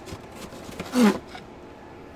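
A short wordless vocal sound from a person about a second in, brief and falling in pitch, among faint small handling clicks.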